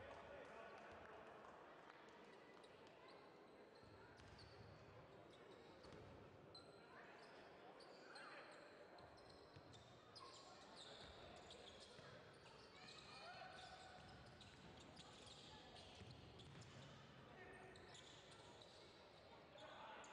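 Faint live court sound of a basketball game in a large hall: a basketball bouncing on the floor, sneakers squeaking in the middle stretch, and players' and spectators' voices.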